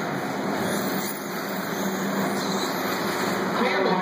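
Steady din of an indoor RC buggy raceway with indistinct voices, and a voice starting near the end.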